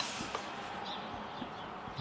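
Quiet outdoor background ambience: a steady low hiss of open air, with a faint click about a third of a second in.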